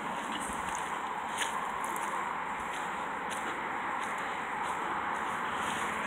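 Steady hiss of distant road traffic, with a few faint ticks.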